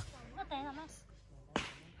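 A faint, higher-pitched voice speaking briefly, then a single sharp smack about one and a half seconds in.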